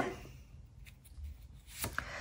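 Fortune-telling cards being handled on a tabletop: a couple of faint ticks, then a light tap near the end as a card is drawn and laid down.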